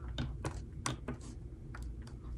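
Light, irregular clicks of a waterproof phone case's plastic edges snapping into place as the two halves are pressed together around the phone, about five in two seconds; the snapping shows the case locking shut for its seal.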